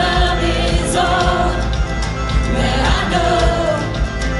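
Live worship band playing, with a singer holding long notes over keyboard and electric guitar.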